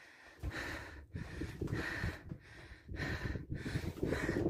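A person breathing hard, a steady rhythm of breaths in and out after climbing a lookout tower's stairs, with low rumbling on the phone's microphone.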